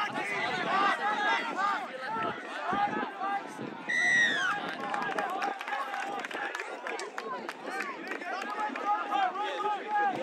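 Many voices shouting and calling over one another, from players on the field and spectators along the sideline. About four seconds in, one louder, high-pitched call rises briefly and then falls.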